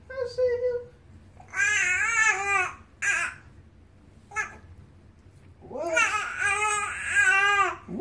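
A baby babbling in high, wavering coos: a brief coo at the start, then two longer runs of babble, one of about a second and a half and one of about two seconds near the end, with short quiet gaps between.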